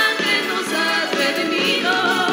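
Music: a choir singing a religious song.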